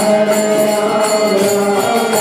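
Kirtan: a man singing a devotional chant over a harmonium's sustained reeds, with small hand cymbals ringing in a steady beat about four times a second.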